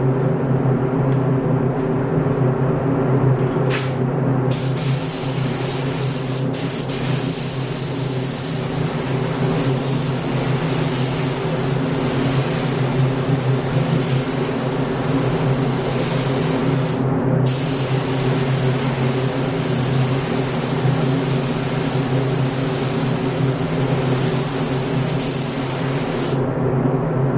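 Compressed-air paint spray gun laying on clear coat: a steady hiss starts about four seconds in, stops briefly near the middle, then carries on. A steady low hum runs underneath.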